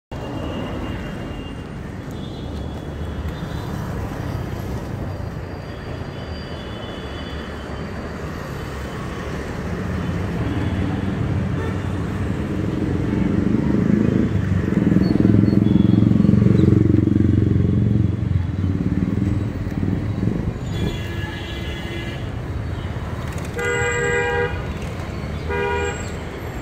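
City road traffic heard on the move: a steady rumble of engines and tyres that swells loudest around the middle. Motor vehicle horns toot in three short blasts over the last five seconds, with fainter horns further off earlier.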